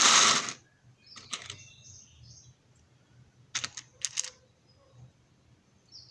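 Plastic cases of carbide lathe inserts being handled and slid on a rough surface: a brief loud scrape at the start, then a few quick, light plastic clicks a little past the middle.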